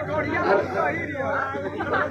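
Several voices chattering at once, softer than the amplified singing just before and after.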